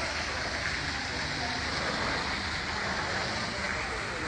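Steady hiss of outdoor background noise picked up by a phone's microphone, even and unbroken.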